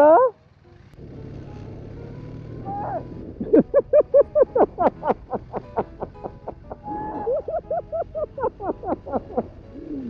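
High-pitched laughter in quick repeated bursts, about four a second, in two runs, over the steady rumble and wind rush of a motorcycle pulling away.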